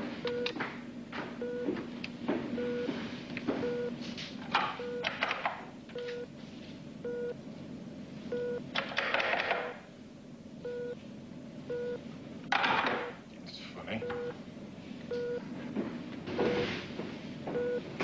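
A short electronic beep repeating about once a second. A low steady hum runs under it for the first few seconds, and it is broken by a few brief clatters and bursts of noise.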